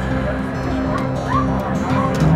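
A dog yelping a few times with short high cries, over music and voices.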